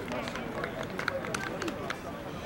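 Indistinct shouts and calls from rugby players on the field, with several sharp clicks in the second half.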